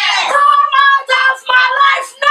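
Several children and women shouting a prayer together in overlapping, high-pitched voices, drawing out their words, in a small room.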